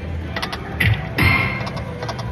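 Konami Money Galaxy video slot machine spinning its reels. A run of clicks and clunks sounds as the reels stop one after another, the loudest a little past a second in.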